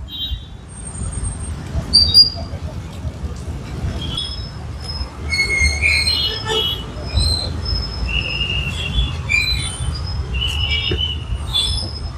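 Steady low rumble of street traffic, with a scatter of short, high-pitched squeaks at varying pitches.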